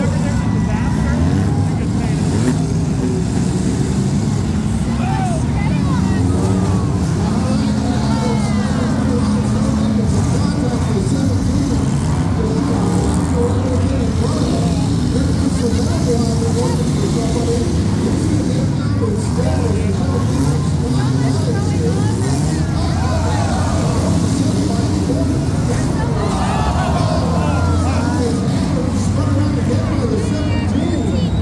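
Many demolition derby cars' engines running and revving together, with pitches gliding up and down. Crowd voices sound over them.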